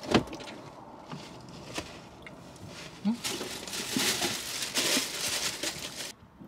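Takeout food being handled and eaten: a sharp click at the start, a few lighter clicks, then a couple of seconds of rustling, with brief murmured vocal sounds.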